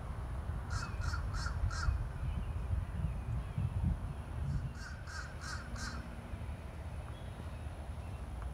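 A bird calling outdoors in two series of four short calls, about a second in and again past the middle, over a steady low rumble.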